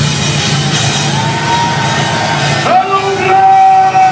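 Rock music with a man singing loudly into a microphone over it: two long held sung notes, the second one lower and louder, starting near the end of the first.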